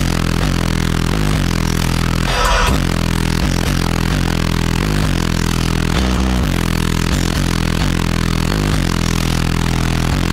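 Loud, bass-heavy music played through a car audio system with two Massive Audio Hippo 15-inch subwoofers, heard inside the cabin; deep bass notes dominate. A short noisy burst cuts through about two and a half seconds in.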